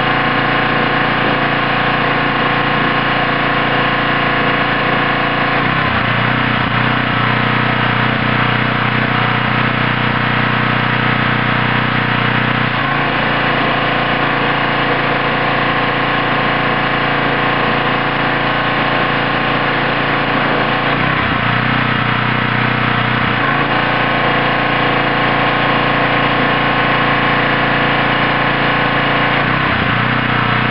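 Gas-engine pressure washer running steadily with the hiss of its spray, the engine note shifting abruptly a few times.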